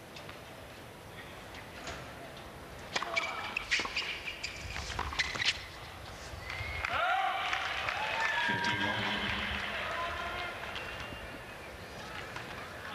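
Tennis racquets striking the ball in a short rally, a few sharp hits starting about three seconds in. The crowd then applauds and cheers for several seconds once the point is won.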